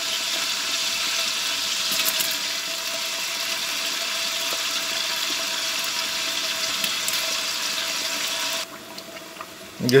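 Hot oil sizzling steadily in a large aluminium degh as chunks of boneless meat go into the fried ginger-garlic paste and green chilies. The sizzle cuts off suddenly near the end.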